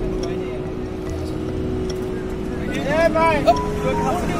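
A man's voice calling out loudly for about a second near the end, over a steady low hum.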